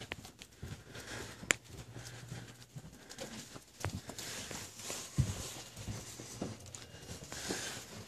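Footsteps of a person walking, irregular light knocks with faint rustling, and a sharp click about one and a half seconds in.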